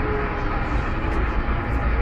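Interior running noise of an MTR SP1900 electric multiple unit in motion: a steady low rumble of wheels on rail with a faint steady hum over it.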